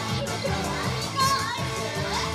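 J-pop idol song playing through a PA system with a steady beat, and a brief, loud high-pitched vocal call over it about a second in.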